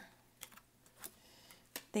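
Tarot cards being handled and laid down on a table: a few light, separate clicks and taps of card against card and tabletop.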